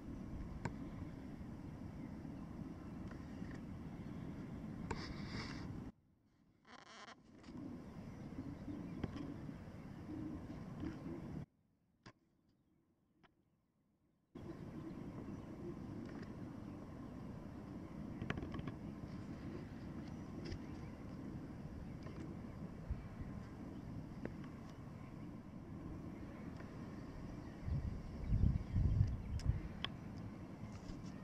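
Wind rumbling on the camera microphone, steady and low, dropping out twice where the footage is cut, with a few stronger gusts near the end.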